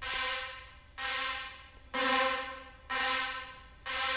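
A short pitched chord sound, like a synth stab, played four times about a second apart. Each hit is held just under a second and fades, and it is run through Ableton Live's Reverb with the reverb's input filtered so the low end is not processed.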